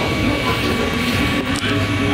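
Voxelab Aquila 3D printer running a print: steady whine from the stepper motors over fan and motion noise.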